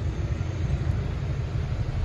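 Low, steady rumble of car traffic on a narrow street, with a car engine running nearby.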